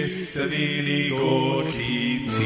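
Voices singing a worship song, holding long notes, with musical accompaniment.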